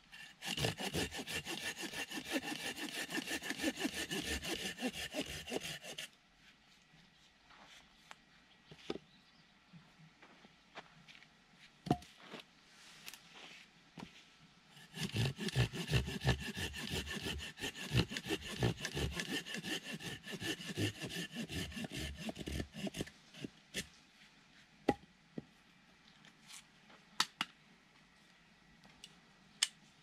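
Hand saw cutting through a plum-wood branch with quick back-and-forth strokes, in two spells: about five seconds at the start, then after a pause a longer spell of about eight seconds. A few sharp knocks fall in the pauses.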